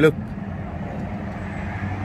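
Steady low mechanical hum with a hiss underneath, typical of a running vehicle, unchanging throughout.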